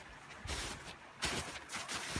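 Footsteps in snow, about three steps a little under a second apart.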